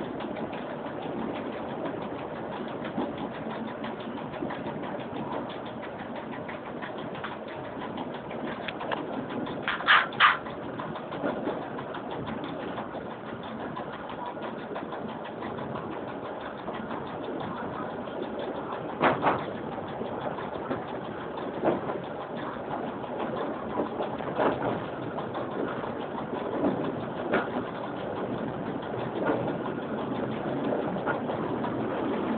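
Cab noise of an EN57 electric multiple unit on the move: a steady running rumble with sharp knocks every few seconds. Two come close together about ten seconds in, and a louder single one comes about nineteen seconds in.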